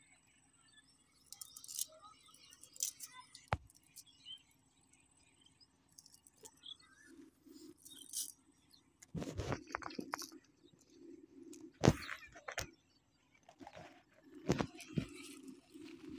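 Scattered knocks, clicks and rustles from handling a cast net, as fish are picked out and dropped into a plastic bag, with the sharpest knocks bunched in the second half. A faint low hum comes and goes underneath.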